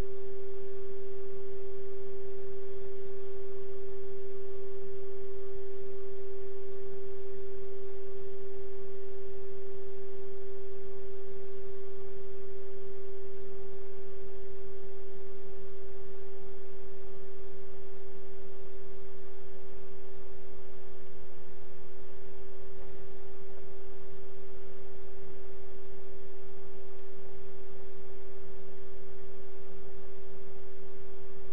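A steady single tone near 400 Hz from a loudspeaker sealed inside a thin 22-gauge metal box lined with foam. The box walls are being driven in antiphase by magnet-and-coil exciters, fed from microphones inside the box, to cancel the tone.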